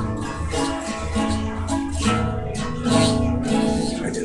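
Acoustic guitar strummed on an A chord, with about two strums a second ringing into each other.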